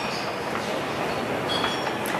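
Steady café background noise: an even wash of sound with no voices in it.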